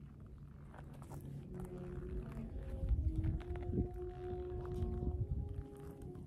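Wind buffeting a handheld phone microphone, with a few faint footsteps on gravel. From about a second and a half in, long held tones that step in pitch sound in the background.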